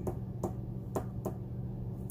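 A metal bottle opener scratching the coating off a lottery scratch-off ticket: about four short scratching strokes, over a steady low hum.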